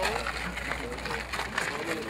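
Quiet, indistinct chatter of a group of men talking.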